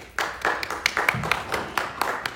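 A small group of people clapping, starting just after the start and going on as a quick, irregular patter of claps.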